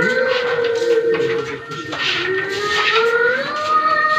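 A voice singing or chanting long, slowly gliding held notes, with a short break in the middle. Faint clicks of carrom men being gathered on the board sound underneath.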